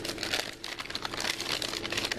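Packaging crinkling as items are handled: a dense run of quick crackles, easing briefly about half a second in.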